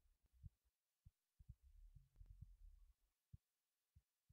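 Near silence, broken by faint, short low thuds and a brief low rumble in the middle.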